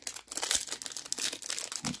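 Crinkling of a plastic-foil Topps baseball card pack wrapper being handled, a dense run of sharp crackles starting about a third of a second in.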